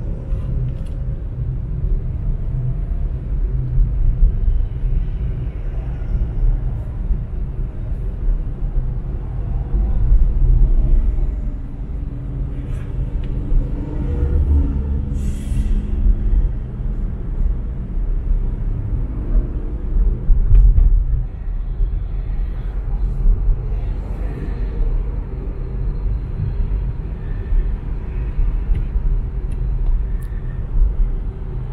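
Low, steady road and engine rumble of a car driving along a highway, heard from inside the cabin, swelling and easing in loudness, with a brief hiss about halfway through.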